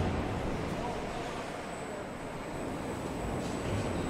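Steady din of car-body factory machinery: a continuous mechanical noise with no distinct strokes or rhythm.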